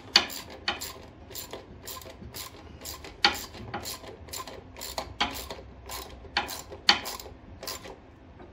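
A 9/16 ratcheting wrench clicking as it tightens a steel bolt, short sharp clicks about two to three a second at an uneven pace.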